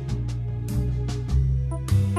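A Yamaha digital keyboard playing a jazz tune: melody and chords over sustained low bass notes.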